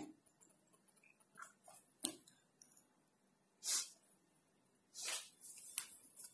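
Quiet kitchen sounds with a few faint sharp clicks and two short scraping swishes, from a wire whisk against an iron kadai while stirring white sauce.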